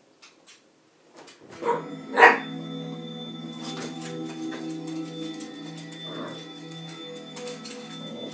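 A Jack Russell terrier barks twice, briefly, about two seconds in, the second bark louder. Music then plays steadily underneath.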